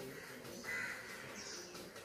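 A harsh, cawing bird call about half a second in, followed by a shorter, higher note, over a faint background hiss.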